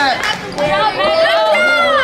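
Children in the crowd shouting and cheering, several high voices overlapping.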